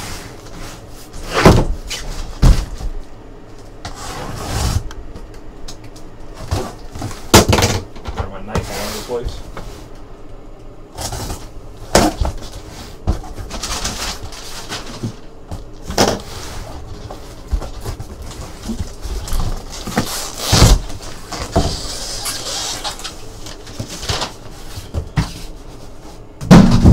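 A cardboard shipping case being opened and unpacked: cardboard and plastic wrap rustle and scrape, with irregular sharp knocks as the shrink-wrapped boxes inside are handled and set down.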